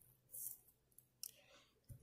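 Near silence, with a few faint short scratches and a small tick from a ballpoint pen on notebook paper.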